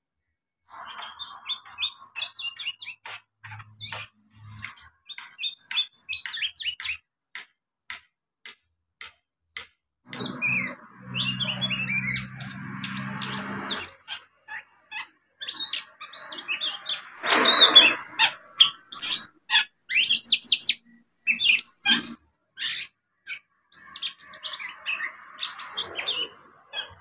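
A young oriental magpie-robin just starting to sing: a long run of short whistled chirps and twittering notes mixed with scratchy chatter. A loud harsh rasping call comes about two-thirds of the way through.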